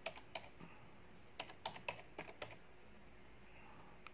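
Faint keystrokes on a laptop keyboard: a couple of taps at the start, then a quick run of about seven keystrokes in the middle.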